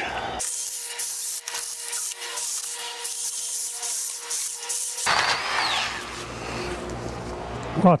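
Milwaukee M12 cordless hedge trimmer running with a steady whine as its blades chop through shrub branches. The whine cuts off about five seconds in.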